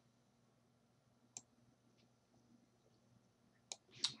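Two sharp computer mouse clicks, one about a second and a half in and one near the end, over near silence with a faint low hum.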